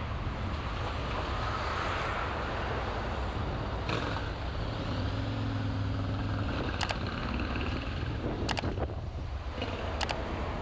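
Car driving slowly in town traffic: a steady mix of road and engine noise. An engine hum comes up for a moment in the middle, and a few sharp clicks come in the second half.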